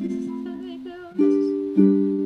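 Ukulele chords strummed and left to ring, with two new chords struck in the second half, each fading after it is played.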